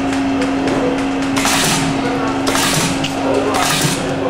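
Wire side lasting machine for shoes cycling under its foot pedal: a steady hum with three short hissing bursts about a second apart as the machine works the side of a shoe.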